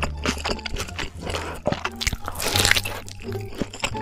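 Close-miked chewing of a mouthful of crispy roast pork belly: rapid crackling crunches, with a louder burst of crunching about two and a half seconds in. Background music with a steady low bass runs underneath.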